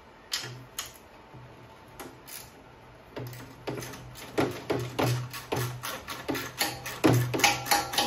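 Socket ratchet clicking as it backs out the engine shroud bolts: a few scattered clicks at first, then quick repeated strokes from about three seconds in.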